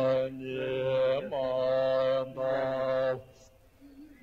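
Male Buddhist ritual chanting on a low, steady pitch, sung in long held phrases that break off a little after three seconds in.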